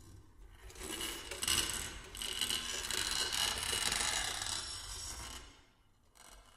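A rough, rasping, rubbing noise from a baritone saxophone and live electronics, swelling in about a second in, holding, then dying away near the end.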